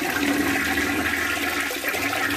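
A toilet flushing weakly, with a steady rush of water swirling in the bowl: a slow flush with no force, which the owner puts down to limescale clogging the small flush holes under the rim.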